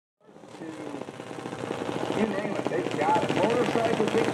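Junior dragster's single-cylinder engine running at idle, a rapid, even popping that grows louder as the sound fades in.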